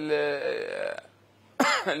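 A man's voice: a drawn-out vowel sound lasting about a second, a brief pause, then speech resumes about a second and a half in.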